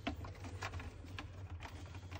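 Irregular small clicks and taps of cables and plastic parts being handled and pushed into place inside a consumer unit, the sharpest right at the start, over a low steady hum.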